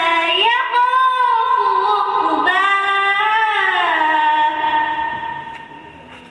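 A girl's voice reciting the Quran in a melodic chant, with long held notes that glide in pitch. The last note fades away near the end.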